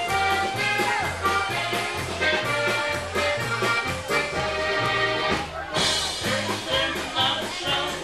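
Polka band playing a lively polka, the bass alternating between two notes in an oom-pah beat about twice a second under the melody. The sound breaks briefly a little past halfway.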